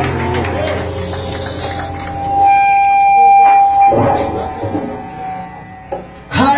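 A live worship band's guitar-led music winding down at the end of a song. A single note is held for about two seconds in the middle, then the sound dies away.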